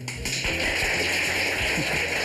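Water running steadily into a pot, switched on suddenly at the start, filling it with water for parboiling frozen porcini mushrooms.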